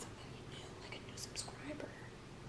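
Faint whispering and soft voices, with two short hissy sounds a little over a second in.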